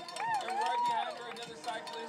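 Faint, distant voices of people outdoors, with one voice calling out in a drawn-out rising and falling tone in the first half.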